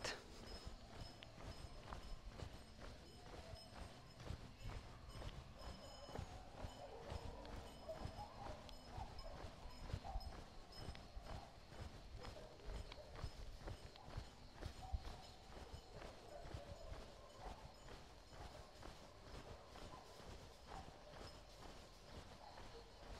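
Faint footsteps at a steady walking pace, a run of soft knocks over a quiet outdoor background.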